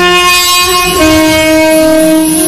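Alto saxophone playing a melody in long held notes, stepping down to a slightly lower note about a second in.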